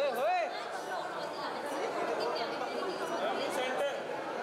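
Several people talking over one another at once: steady overlapping chatter in a busy room, with no single voice standing out.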